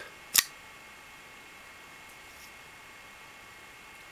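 A single sharp metallic snap about half a second in: the spring-assisted folding knife's blade flicking open and locking.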